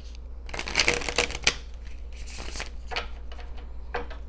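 A deck of tarot cards being shuffled by hand, in two spells of rustling and riffling: a longer one from about half a second in and a shorter one past the middle.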